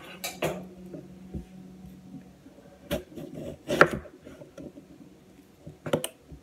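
Kitchen knife cutting through a firm persimmon and knocking on a wooden cutting board: a few separate knocks, the loudest a little past the middle.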